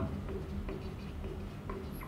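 Marker pen on a whiteboard, faint short strokes and scratches as words are written by hand.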